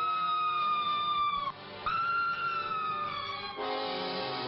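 A wolf howling twice: two long howls, each sliding slowly down in pitch, with a short break between them. Sustained background music runs under the howls and changes to a new chord near the end.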